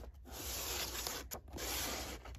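Paper and cardboard rubbing as hands turn and slide a small cardboard shipping box, with the sheet of paper covering its side scraping along it. There are two stretches of rubbing with a brief click between them.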